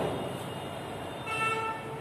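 A vehicle horn sounds once, a short steady toot of about half a second, starting just past the middle. A sharp knock comes right at the start.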